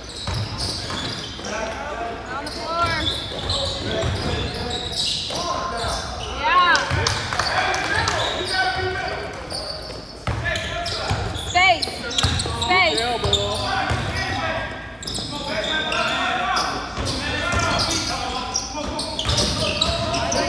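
Basketball game in a gym: a ball bouncing on the court and sneakers squeaking in short chirps as players cut and stop, loudest in two spells in the middle, over the voices of players and spectators.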